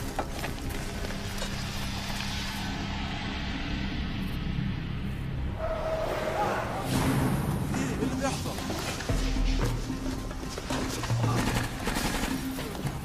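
Film soundtrack: background score music under indistinct voices and movement, with no clear words.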